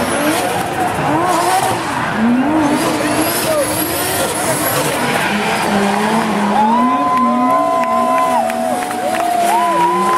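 Drift cars' engines revving, the pitch wavering up and down as they spin donuts, with tyres squealing on the asphalt; a steady high squeal holds through the second half.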